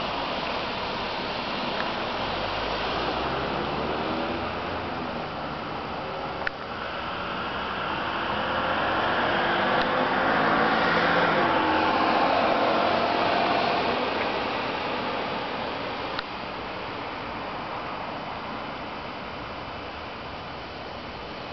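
Street traffic: cars passing, with one growing louder through the middle and then fading away over a steady background noise. Two sharp clicks come about a third of the way in and again near the end.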